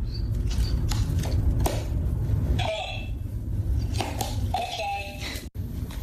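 A dog pawing at plastic recordable talking buttons on a board, several sharp clicks, with short pitched dog barks in the second half.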